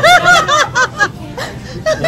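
A woman laughing hard, a quick run of high-pitched 'ha-ha' bursts in the first second that tails off into softer, broken laughter.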